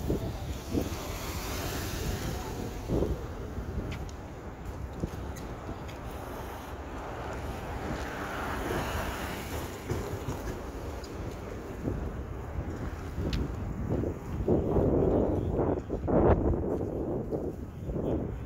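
City street ambience: a steady traffic rumble with vehicles passing, and wind buffeting the microphone. There is a louder stretch near the end.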